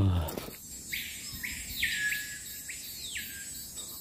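A wild bird calling: a quick series of about four whistled notes, each sliding down in pitch, over a faint steady hum of insects.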